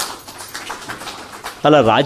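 A man's amplified speech through podium microphones pauses, leaving an even noisy hiss for about a second and a half, and resumes near the end.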